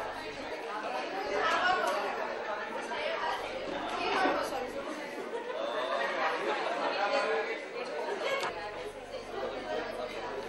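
A man speaking into reporters' microphones, with crowd chatter in a large room behind him.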